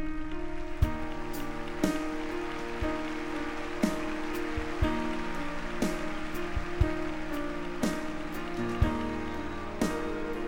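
Slow live instrumental music: grand piano with long held chords over a soft hiss, marked by a sharp click about once a second.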